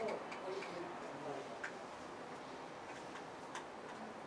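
Quiet room tone with a few faint, irregularly spaced clicks, and a faint voice trailing off in the first second.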